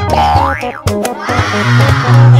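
Background music with a cartoon boing sound effect, a quick upward glide in pitch about half a second in, and a brief rushing noise near the end.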